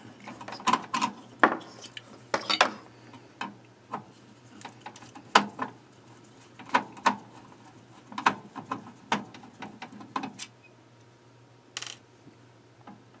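Screwdriver backing screws out of a sheet-steel equipment chassis: irregular small clicks and short metallic scrapes, pausing near the end.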